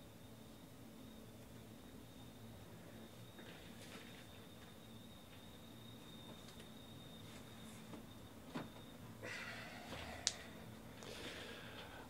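Quiet room tone with a faint steady high-pitched whine. A few soft clicks and rustles come in the last few seconds.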